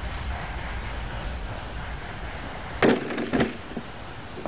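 A short wooden log is thrown and lands with a loud knock nearly three seconds in, then knocks again about half a second later as it bounces or settles.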